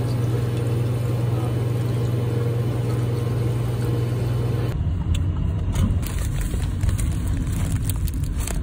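Steady low mechanical hum from a Crathco refrigerated beverage dispenser while iced coffee is poured. The sound changes abruptly a little past halfway to a low rumble heard inside a car.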